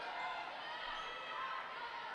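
Gym ambience during a basketball game: a low, steady murmur of crowd voices in a large hall, with faint court sounds under it.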